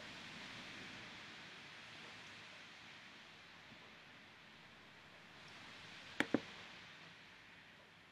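Faint soft hiss in a quiet room that fades away over the first three seconds and returns briefly later, with two quick clicks close together about six seconds in.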